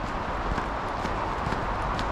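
Footsteps of a person walking on a packed-snow and icy road, about two steps a second, over a steady background noise.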